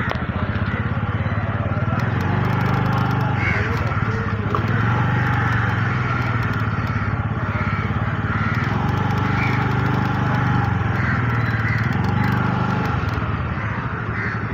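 Motorcycle engine running at low speed under the rider, the pitch and level easing up and down a little with the throttle over the whole stretch.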